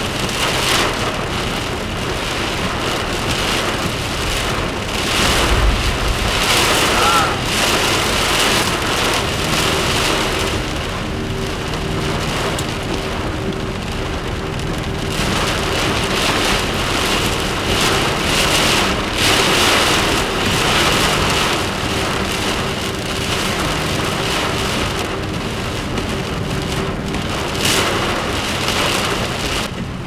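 Heavy wind-driven rain pelting the car in a severe thunderstorm's damaging winds, gusts surging and easing several times, heard from inside the parked car with the wipers running and a steady low hum underneath.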